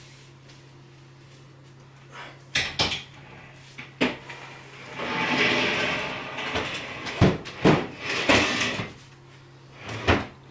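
A heavy wooden desk being carried and manoeuvred into place: a few sharp knocks, a longer scuffing noise midway, then three heavier thuds near the end as it is bumped and set down.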